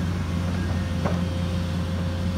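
A large engine running steadily, a low even drone with no change in speed.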